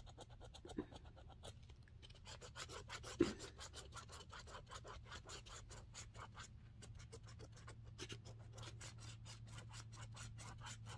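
A scratch-off lottery ticket being scratched, its coating scraped away in quick repeated strokes, about six a second, over a low steady hum. A short, louder sound comes about three seconds in.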